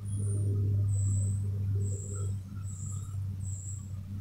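Outdoor background ambience: a steady low rumble, louder for the first two seconds, under a short high chirp that repeats about five times.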